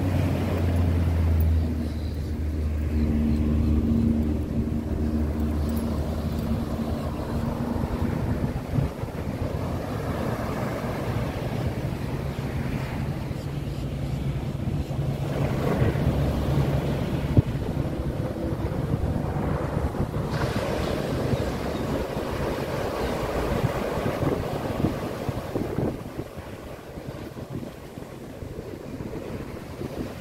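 Ocean surf breaking and washing up the beach, mixed with wind buffeting the microphone. Low steady hums come and go over it, in the first few seconds and again around the middle.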